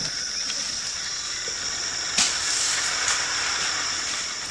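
Outdoor ambience with a steady high-pitched insect drone over a hiss of background noise. A single sharp click comes about two seconds in.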